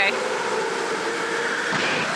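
Electric go-karts running around an indoor track: a steady whir of motors and tyres echoing in the hall, with a dull knock near the end as a kart hits the wall.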